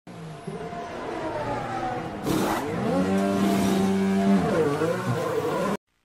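Formula 1 car's turbo V6 engine running, its pitch gliding and then holding steady, dipping briefly near the end, with a short hissing burst about two seconds in. The sound cuts off suddenly just before the end.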